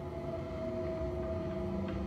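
A sustained low chord from a film score, a few notes held steady, playing through a room's speakers and picked up by a camera microphone in the room.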